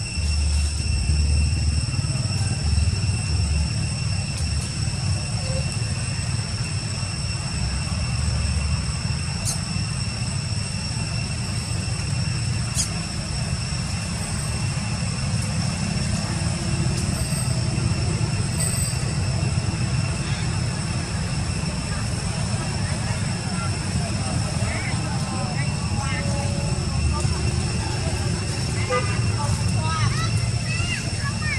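Outdoor ambience: a steady low rumble with a constant high-pitched whine over it. Faint short chirps or distant voices come in near the end.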